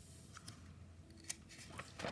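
Quiet room with a few short, faint clicks, the sharpest about a second and a quarter in.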